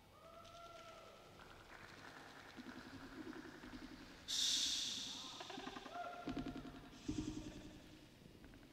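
Live rock band instruments on stage: held, gliding pitched notes stepping from one pitch to another, then a sudden bright crash about four seconds in that rings away, and two heavy hits near the end.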